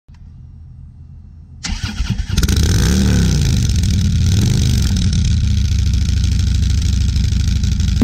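Touring motorcycle's engine starting, heard close at the exhaust muffler: it catches about a second and a half in, then runs loudly and steadily, revved up and back down twice.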